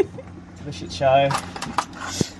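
A man's voice briefly, about a second in, then a few light clicks and rustles as a small plastic packet of metal drawer handles is handled.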